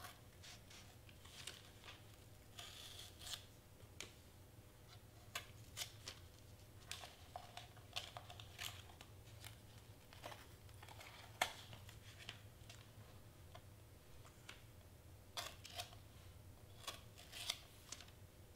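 Pen-style craft knife cutting through layered cardstock: irregular short scratches and sharp clicks as the blade is drawn along the edge, with a longer scraping stroke about three seconds in.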